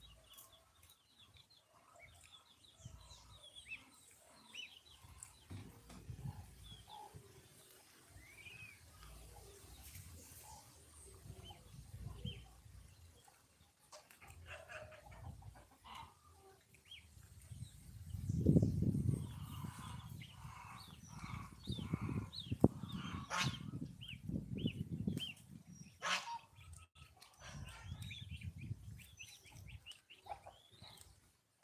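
Goslings and young chickens peeping and chirping in many short, high calls as they feed. A low rumble comes and goes underneath, loudest in the second half, with a few sharp clicks.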